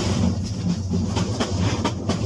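Added sound effect of a train running on rails: a steady low rumble with a few sharp wheel clicks over rail joints in the second half.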